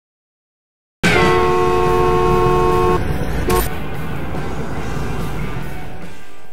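Two-tone car horn honking: a long blast of about two seconds, then a short toot, over the steady rumble of a car driving.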